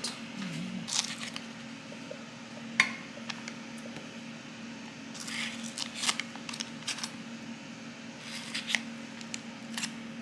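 A knife slicing pats of butter off a stick in its wrapper and dropping them into an oiled glass baking dish: a few scattered light clicks and brief rustles over a steady low hum.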